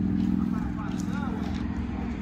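A steady low motor hum, with a faint voice speaking in the background.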